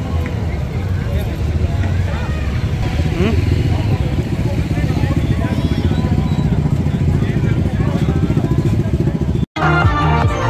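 Crowd voices chattering over the steady low running of motorcycle and car engines moving at walking pace. The sound cuts out abruptly for a moment near the end.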